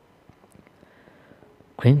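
Near silence with faint room tone, then a man's voice reading aloud in Sinhala starts again near the end.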